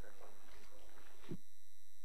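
Steady electronic whine in the chamber's sound or recording system: several constant tones from low to high, unchanging. Faint room noise underneath cuts out abruptly just over a second in, leaving only the tones.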